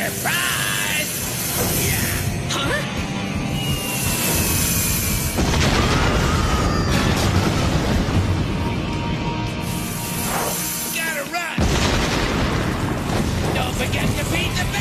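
Cartoon sound effects of a bomb blast and a rumbling rockfall caving in a cave entrance, over background music. The heavy rumble builds about five seconds in and cuts off abruptly, then starts again just before the end.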